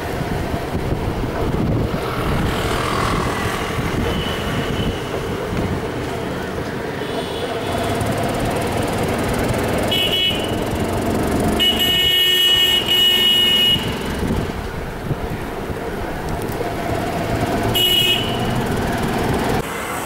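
Urban road traffic noise with vehicle horns tooting several times: short honks scattered through, and one longer blast of about two seconds a little past halfway.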